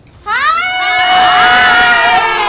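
Dance music cuts off at the start, and a moment later a group of women break into loud whooping cheers together, their voices sliding up into a long, high held shout.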